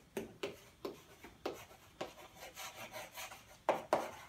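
Chalk writing on a chalkboard: a run of short scraping strokes as letters are formed, busier in the second half, with the two loudest strokes just before the end.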